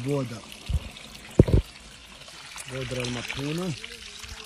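Slurry of ground ore and water pouring and flowing through a washing channel, the wash stage that carries the crushed rock powder along so the gold can be separated. A voice is heard briefly at the start and again over the second half, with a couple of dull thuds in between.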